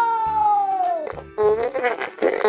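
A man's drawn-out, high-pitched wail of "no", falling in pitch over about a second: a cry of dismay. Then shorter vocal sounds follow over background music with a steady low beat.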